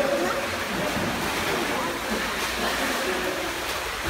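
Steady splashing and rush of swimming-pool water as a small child paddles along the edge.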